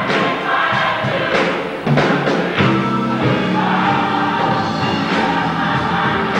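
Gospel choir singing full-voiced, with hand claps along the beat.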